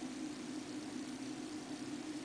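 Steady low hum with faint hiss, the background noise of the room or recording, with no distinct event.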